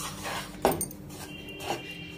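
Spoon stirring a dry flour mixture in a non-stick kadai: soft scraping, with one knock of the spoon on the pan about half a second in and a lighter one near the end.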